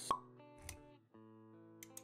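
Intro-animation sound effects over quiet background music with held chords: a sharp pop right at the start, then a softer low thud a little later.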